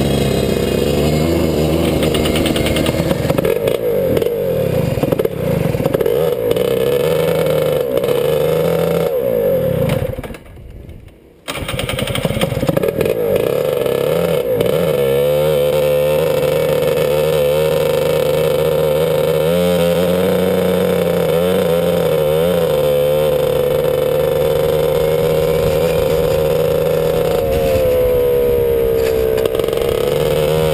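Rotax DD2 kart's 125 cc two-stroke single-cylinder engine running at low speed and being revved up and down. The sound falls away for about a second around ten seconds in, then the engine is running again. Near the end the pitch rises as it accelerates onto the track.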